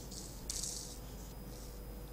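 Faint, irregular rustling of a shirt against a clip-on microphone as the wearer moves, over a steady low electrical hum.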